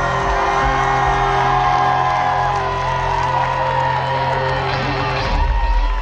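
Live rock band playing loudly through a large PA, with the crowd singing along and whooping. A long-held low note stops about five seconds in.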